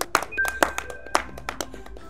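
A small group clapping by hand, the claps thinning out and dying away after about a second, over quiet background music.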